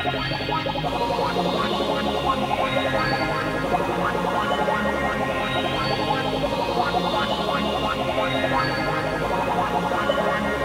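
Mid-1990s German techno/rave dance track, steady and dense with a driving low beat and rising sweeps that come back about every three seconds.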